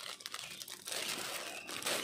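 Plastic packaging crinkling and rustling as it is handled, a dense run of fine crackles that is a little louder near the end.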